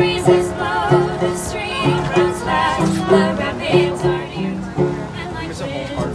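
Folk song sung by a woman to banjo accompaniment: a steady rhythm of plucked banjo notes under the singing voice.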